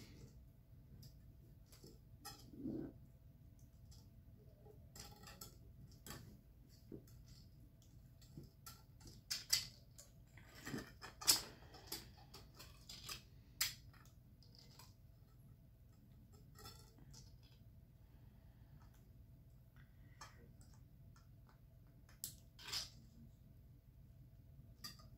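Faint, irregular clicks and ticks of jewelry pliers and sterling silver wire being bent and twisted by hand while wire-wrapping a pendant, with a cluster of louder clicks around the middle and two more near the end.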